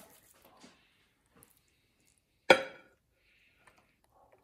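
A single sharp knock of cookware about two and a half seconds in, dying away with a brief ring, as a frying pan is brought to a serving plate. Otherwise quiet, with only faint handling sounds.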